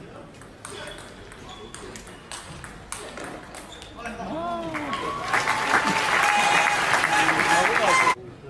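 Table tennis rally: the celluloid ball clicking off the rackets and table in quick succession for about four seconds. Then an arena crowd shouting and applauding the point, growing loud and cut off suddenly at the end.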